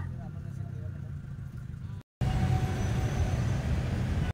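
Low rumble of road traffic and vehicle noise. It cuts out briefly about halfway and comes back louder.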